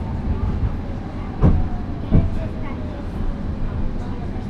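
Interior running noise of a Badner Bahn light-rail car on street track, a steady rumble with two sharp knocks from the wheels on the rails about a second and a half and two seconds in. A faint whine slowly falls in pitch underneath.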